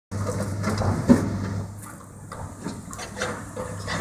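Excavator at work: a steady diesel engine hum that fades after about a second and a half, with scattered knocks and crunches, the sharpest about a second in.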